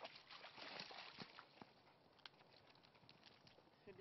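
Faint, irregular crackling and rustling of footsteps moving through brush and broken twigs, thinning out after about two seconds.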